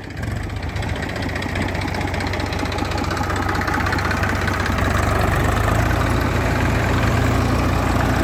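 Diesel tractor engines running under load as a Swaraj 735 FE drives a tractor-mounted soil loader that is digging and conveying earth, with a Massey Ferguson tractor running alongside. The sound grows louder over the first few seconds, then holds steady.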